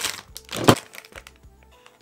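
Plastic candy bag crinkling as it is pulled and torn open, with one sharp snap a little before the one-second mark, then quieter.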